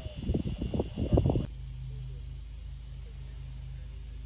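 Outdoor ambience: irregular low rustling and thumps over a steady high insect drone. Both cut off abruptly about a second and a half in, leaving a quieter low steady hum.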